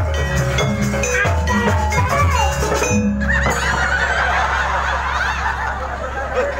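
Live Banyuwangi janger gamelan ensemble playing, drums under ringing metal percussion notes, which stops abruptly about halfway. It is followed by a crowd of voices calling and shouting.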